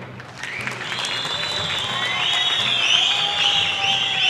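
Crowd applauding and cheering at a political rally, with many hand claps building up about half a second in and continuing steadily, high shouts mixed through.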